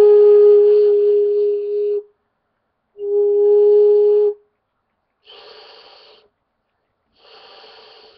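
End-blown wooden flute sounding two held notes at the same steady pitch, the first about two seconds long and the second about a second and a half. Then two much quieter breaths into it, about a second each, give only an airy rush with no note: the breath is not being split on the edge, so nothing is happening.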